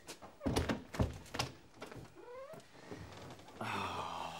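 A wooden door being pushed shut, with a few dull thunks, followed a little later by a short rising squeak.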